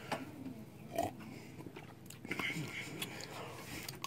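Quiet sipping and swallowing of a fizzy energy drink from a glass tumbler, with small mouth sounds and a few faint knocks.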